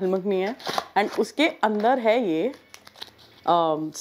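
A woman talking, with the crinkle of a foil food pouch being handled in a short pause in her speech near the end.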